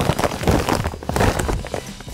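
A 50-pound bag of pool filter sand rustling and crinkling as it is handled and turned over, a run of irregular crackles and crumples.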